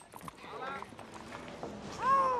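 Horses' hooves clip-clopping on cobblestones, fairly quiet, with faint voices in the background.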